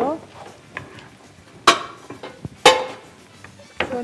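Kitchenware knocked or set down on a worktop: two sharp clanks about a second apart, each ringing briefly, among a few lighter clicks.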